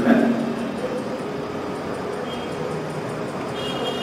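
Steady room noise of a lecture hall heard through the microphone in a pause between a man's spoken phrases, with a faint high tone near the end.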